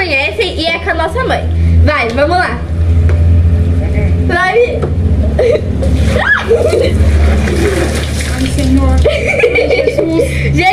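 Girls' voices talking and laughing in short stretches over a steady low rumble.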